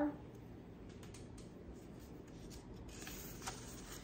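Quiet handling of a paperback picture book: a few faint taps, then a short papery rustle about three seconds in as a page is turned.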